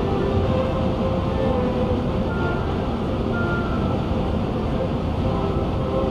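Steady road and tyre noise of a car cruising at highway speed, heard from inside the car, with faint background music over it.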